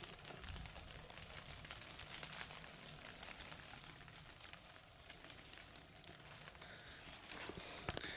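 Faint outdoor ambience: a soft, even hiss with light crackling ticks, and a sharp click near the end.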